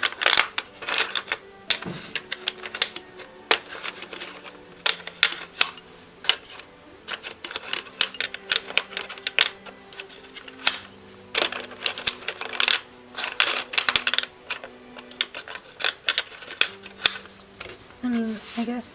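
Wooden pencils clicking and rattling against each other and the wooden tray of an art case as they are handled and sorted, in many quick, irregular clicks.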